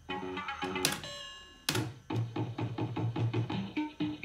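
Electronic fruit slot machine playing its beeping electronic tune, a quick run of short notes, while its lamps run around the board during a spin. Two sharp clicks sound about one second and nearly two seconds in.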